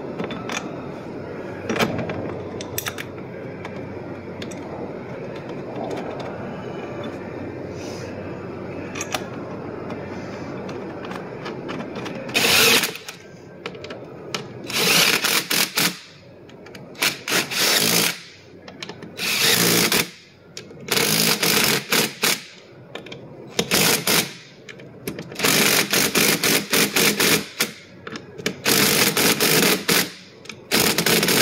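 A cordless impact driver with a socket extension runs in about eight short hammering bursts, driving 3/8-inch bolts into freshly tapped holes in a steel door frame to hold a door-stop bracket. This starts about twelve seconds in; before that, the bolts are threaded in by hand, with only a steady background noise and a few light metal clicks.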